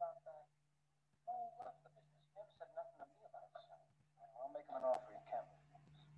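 Faint, tinny film dialogue: men's voices played from a computer and picked up secondhand by a laptop microphone, in two short stretches, over a steady low hum.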